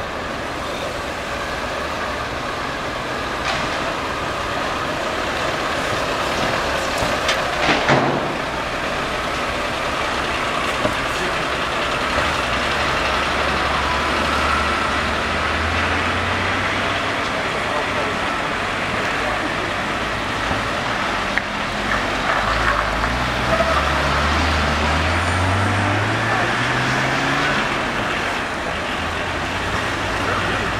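Military utility vehicles towing field guns driving past in procession, their engines running, with the engine pitch rising as they pull away in the second half. A brief sharp noise about eight seconds in, and voices in the background.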